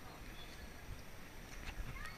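Quiet outdoor background with faint, distant voices, and a few soft knocks near the end.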